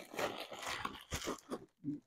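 Plastic mailer packaging crinkling and rustling in short, fairly faint bursts as it is handled.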